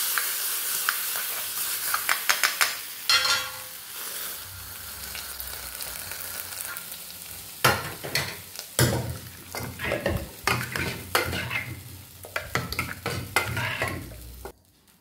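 Hot tempering oil sizzling loudly with crackles as it hits cooked bottle gourd kootu, the hiss fading away over the first few seconds. From about halfway on, a steel ladle stirs the kootu, clicking and knocking against the aluminium pressure cooker.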